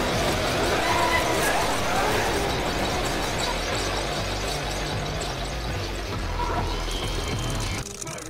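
A dense, cluttered mix of music and voices sounding at once, with a brief dropout near the end.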